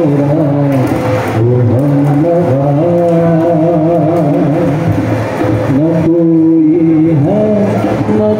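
Live Indian light music: a harmonium sounding held notes, with a man singing over it, tabla and acoustic guitar accompanying.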